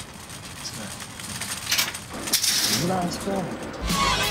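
Light metallic clinking with low voices, and music with a deep bass starting just before the end.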